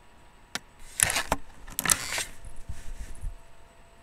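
Close handling noise as the camera is moved: a click about half a second in, then two short bursts of rattling and rustling about a second apart, with low bumps trailing off.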